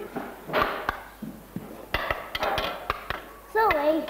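A toddler's high voice babbling in short, unworded bursts, with light knocks of wooden spoons against metal pans during pretend cooking.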